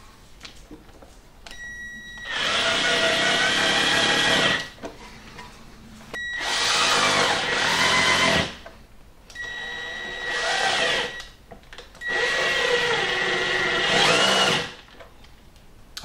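A 12-volt cordless drill driver running through a right-angle offset screwdriver attachment, driving Torx wood screws home in four runs of a couple of seconds each. Each run opens with a steady whine from the motor and gears, and the screws go in without the bit slipping out.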